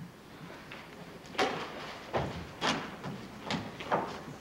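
Footsteps on a stage floor: about five knocks, irregularly spaced, beginning about a second and a half in.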